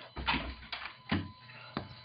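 Handling noise: four or so soft knocks with rustling and low rumble between them, as a camera phone is moved about.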